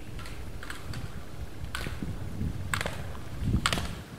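Slalom skier's skis scraping across the snow at each turn, short strokes about once a second that grow louder as the skier nears, over a low wind rumble on the microphone.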